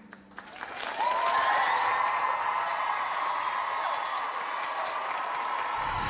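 Studio audience breaking into applause and cheering about a second in, the clapping joined by high whoops and screams, and holding steady after that.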